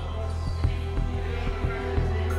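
Slow, sad background music with held notes over a low hum, crossed by dull thumps about every half second.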